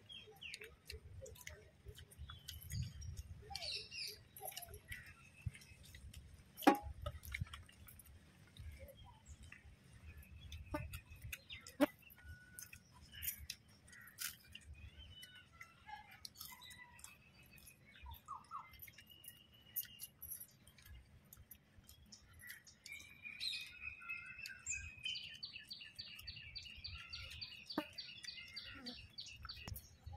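Small birds chirping in the background, with a fast repeated trilling call over the last several seconds. A few sharp clicks stand out, the loudest about seven and twelve seconds in.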